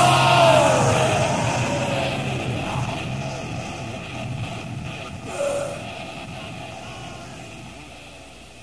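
The final chord of a death/thrash metal song ringing out and fading steadily away, with a falling pitch bend in the first second. It is a lo-fi cassette demo recording, with hiss left as the chord dies.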